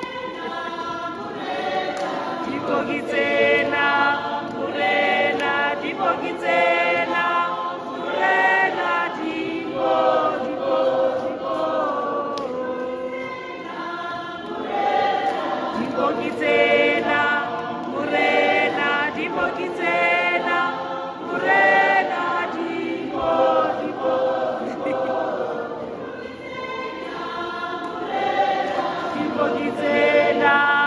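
Church congregation singing a hymn together, many voices holding long sung notes.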